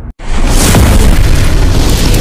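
Cinematic explosion sound effect of an animated logo intro: after a brief dropout just after the start, a sudden loud boom bursts in and carries on as a heavy rumble.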